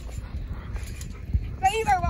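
Trampoline bouncing: dull low thuds of the jumping mat under wind rumble on the microphone, with a brief high-pitched yelp near the end.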